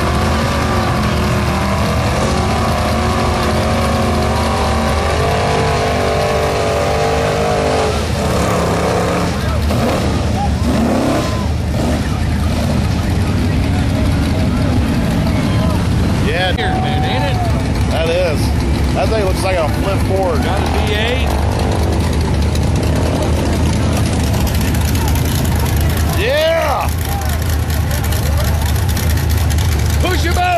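Big-engined lifted mud trucks running loud and steady, with engine revving that wavers in pitch during the first several seconds. People shout and talk over the engine noise in the second half.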